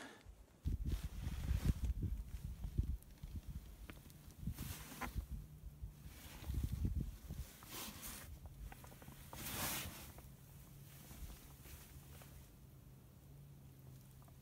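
Footsteps climbing the wooden stairs of a hunting tree stand: a run of heavy, irregular thuds with rustling of a winter jacket. The steps go quieter in the second half, leaving scattered rustles.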